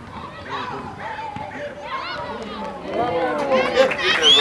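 Several voices shouting and calling over one another around a football pitch, louder and higher-pitched near the end.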